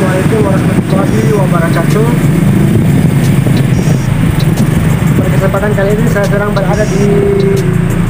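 Loud, steady low rumble of outdoor background noise, with a person's voice heard twice: about half a second in, and again from about five and a half to seven and a half seconds.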